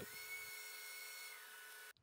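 Band saw cutting a curve in a pine board, heard faintly as a steady high whine over light hiss. The whine drops slightly in pitch near the end, then cuts off suddenly.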